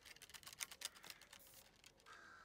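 Near silence with a run of faint, rapid clicks and ticks that stop shortly before the end.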